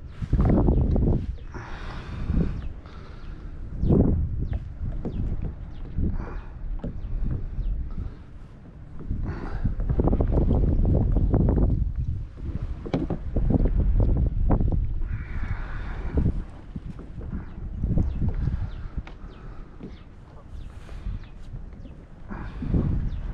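Gusty wind buffeting the microphone of a fishing kayak on choppy water, rising and falling in surges every second or two, with water lapping and splashing against the plastic hull.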